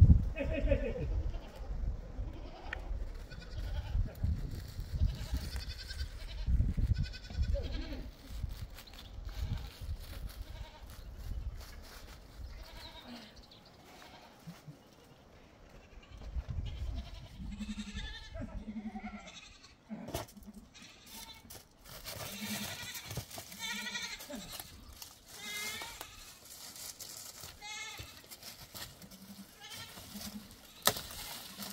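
Goats bleating now and then, several short calls mostly in the second half, over a low rumble in the first half.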